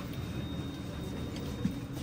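Steady low background hum of an elevator car standing with its doors open, with a faint thin high whine in the first second and no distinct mechanical event.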